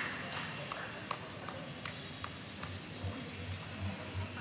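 Applause dying away to a few scattered hand claps, each a single sharp clap at irregular intervals, over a faint steady high whine. Soft low thuds come in during the second half.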